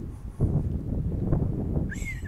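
Wind buffeting the microphone: a low, uneven rumble that gusts up about half a second in.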